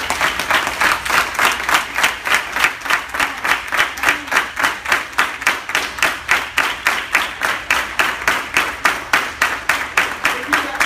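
A roomful of people clapping together in a steady rhythm, about three claps a second.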